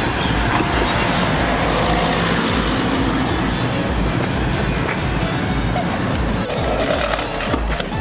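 A loud, steady rushing noise with music playing underneath.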